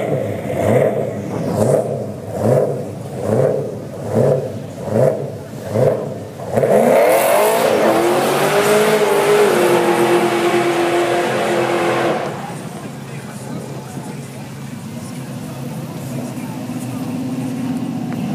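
Car engine revved hard in short bursts, about one a second, then held at full throttle with a rising pitch and a loud hiss and steady squeal that cut off sharply about twelve seconds in. A quieter engine runs after that.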